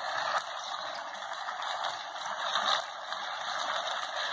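Chicken pieces sizzling steadily in a frying pan, a continuous hiss.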